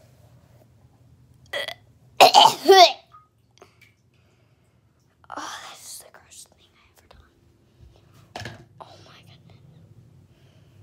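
A young person's wordless vocal noises of disgust: a short sound, then a louder wavering cry about two seconds in, followed later by a breathy rush and a single click.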